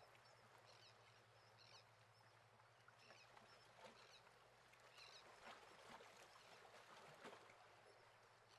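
Near silence: faint room tone with a few very faint short chirps.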